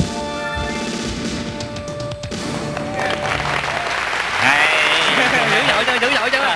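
Stage dance music stops about two seconds in. Audience applause and crowd voices rise after it.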